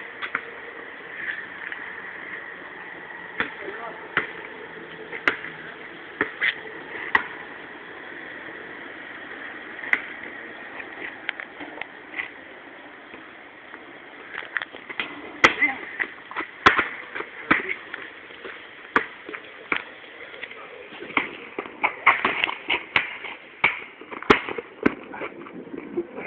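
Scattered sharp knocks and clicks at irregular intervals over a steady background hiss, coming thicker near the end.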